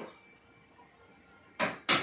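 Quiet room tone, then, about a second and a half in, two short rattling shakes of salt from a small container.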